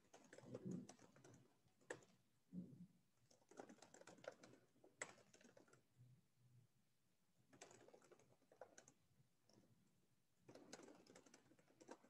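Faint computer keyboard typing in about four bursts of rapid keystrokes with short pauses between them, picked up by a headset microphone.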